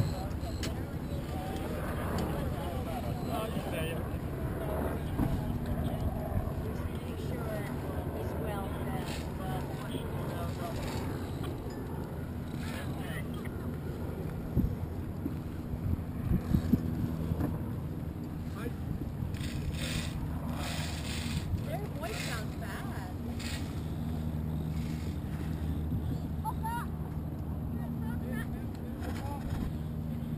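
Motorboat engine running at a low, steady idle over water slapping the hull and wind on the microphone. A few louder knocks or splashes come around the middle.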